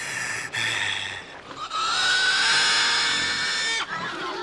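A person's voice in harsh, strained cries: a short rough cry in the first second, then a long, high cry rising slightly in pitch that cuts off suddenly near the end.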